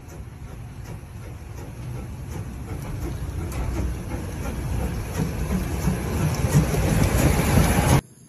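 Steam locomotive 75 1118 running along the track towards the listener, a heavy rumble that grows steadily louder as it comes closer.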